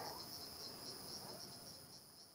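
Insects chirring steadily in the background: a faint, high-pitched, slightly pulsing drone.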